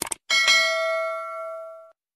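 A mouse-click sound effect, a quick double click, then a bell-chime sound effect for the notification bell. The chime rings with several tones at once and fades out over about a second and a half.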